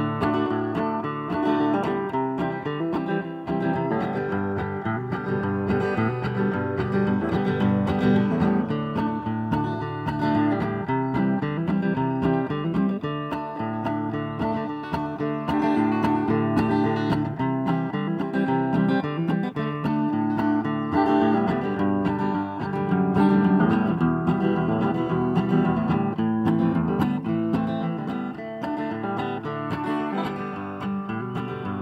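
Cutaway steel-string acoustic guitar strummed in a steady rhythm, playing an instrumental passage of changing chords with no singing.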